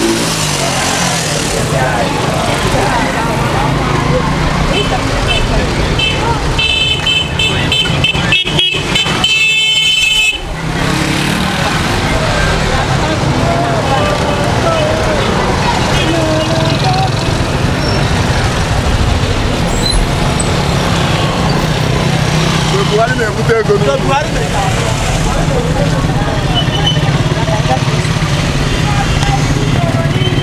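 Road traffic beside a walking crowd: vehicle and motorcycle engines running with a steady low hum, and a horn tooting for a few seconds about a quarter of the way in. People's voices in the crowd run underneath.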